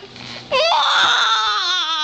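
A person's high-pitched wailing cry. It jumps up sharply about half a second in, then slides slowly down in pitch with a fast wobble.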